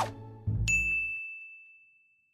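A single bright ding: a chime sound effect struck once about half a second in, together with a soft low thump, ringing on one high note and fading away over about two seconds.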